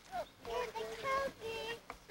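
A toddler's voice babbling and vocalising wordlessly, a high-pitched voice with several short held vowel sounds.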